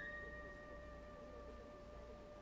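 A faint steady tone with a few overtones, held evenly without wavering, over quiet low room noise.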